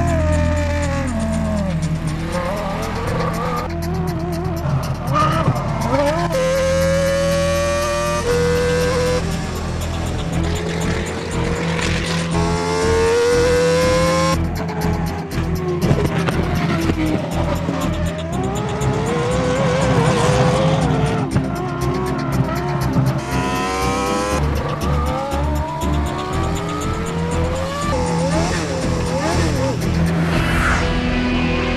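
Car tyres squealing through hard cornering, several long squeals each rising in pitch, over the car's engine running.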